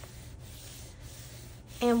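A hand rubbing and pressing flat the paper pages of an art journal after a page turn: a soft, steady rustle of skin on paper.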